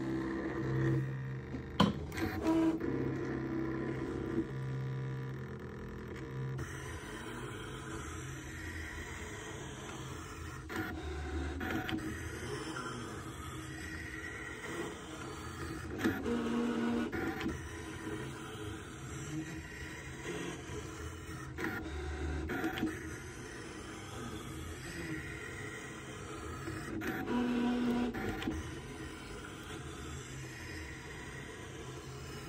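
Brother ScanNCut SDX125 cutting machine running a cut: its motors whir as the blade carriage and mat shuttle back and forth, in a series of passes with louder ones about sixteen seconds in and near the end.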